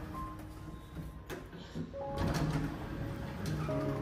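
Background music with held notes, over the stainless-steel doors of a home passenger elevator sliding, with a sharp click about a second in.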